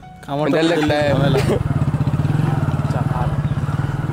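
Motorcycle engine comes in suddenly about a third of a second in, then runs steadily as the bike rides along, with voices over it at first.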